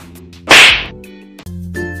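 A loud comedy whip-crack sound effect about half a second in, dying away within a fraction of a second. A music jingle starts about a second and a half in.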